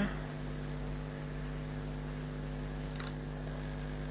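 Steady electrical mains hum with one faint tick about three seconds in.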